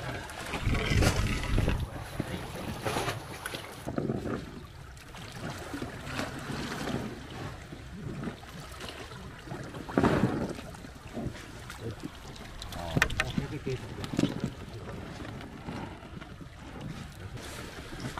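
Sea water sloshing around a small foam boat and a concrete pillar, with wind buffeting the microphone. Scattered knocks, clicks and scrapes come from hand work on the pillar's shell-crusted surface at the waterline; the loudest bumps are about a second in and about ten seconds in.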